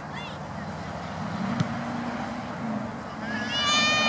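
Sideline sound of a youth soccer match: faint voices of players and spectators, a single sharp knock about a second and a half in, and a high-pitched shout near the end.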